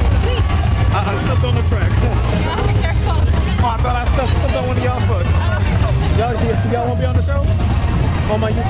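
Many people in a street crowd talking at once, over a steady low rumble.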